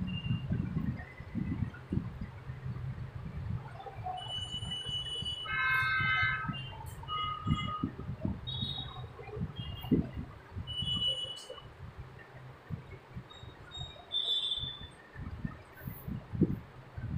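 Scattered short, high bird chirps and trills, busiest about six seconds in, over an uneven low rumble.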